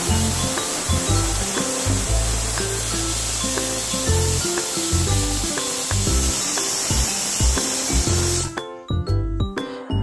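Pressure cooker's weighted whistle valve hissing steadily as it vents steam while the cooker is at pressure, cutting off suddenly about eight and a half seconds in. Background music plays under it.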